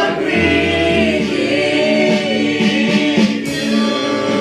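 A church congregation singing a praise song together, many voices holding and gliding between long notes.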